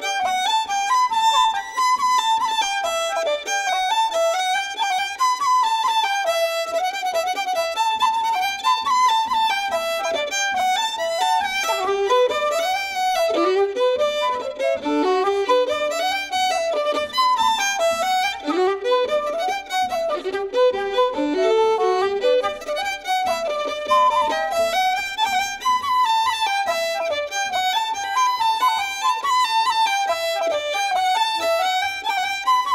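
Fiddle and flute playing a traditional Irish polka together, a lively dance tune of quick, even notes. The melody dips to lower notes in the middle stretch before climbing back up.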